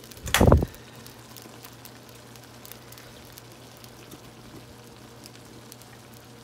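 A single thump about half a second in, then a thick cream sauce simmering in a skillet, with faint scattered bubbling pops over a low steady hum.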